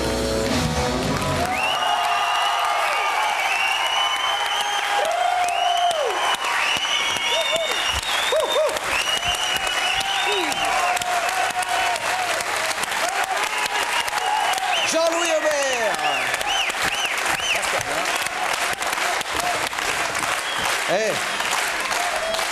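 A live rock band's song ends about a second and a half in, then a studio audience applauds steadily, with shouts and many short high whistles over the clapping.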